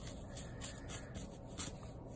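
Yarn rubbing and rustling against a paper loom and its warp strings as hands weave it over and under and draw it through, in several short scrapes.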